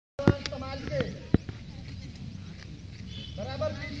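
Crowd of seated schoolchildren talking in the background, with a few sharp knocks in the first second and a half and a short voice call near the end.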